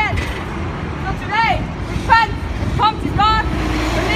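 A woman preaching in the street, her voice rising and falling in emphatic phrases over the steady low rumble of passing city traffic.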